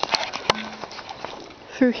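Two sharp clicks about a third of a second apart, the second followed by a brief low hum, then faint handling noise.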